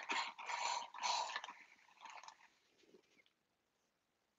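Hand-held trigger spray bottle misting water onto the painted wardrobe door: a few quick hissing sprays, fading away after about a second and a half.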